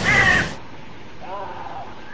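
A harsh, cawing bird call at the start, cut off abruptly as the audio changes to a quieter, duller-sounding stretch. A fainter call follows about a second and a half in.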